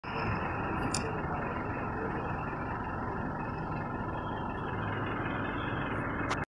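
Steady road and engine noise of a moving motor vehicle, with a faint click about a second in.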